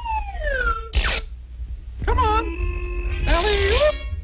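Cartoon soundtrack of voice-like comic effects and score. It opens with a falling glide, has a short noisy burst about a second in, then wavering and held tones ending in a rising wobble.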